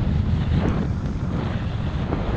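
Wind rushing over the microphone of a skier's point-of-view camera while skiing downhill through fresh powder, with the skis hissing through the snow.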